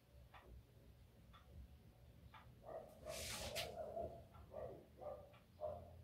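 Faint crinkling of a thin clear plastic bag being handled, in short bursts from about halfway in, after a few faint clicks.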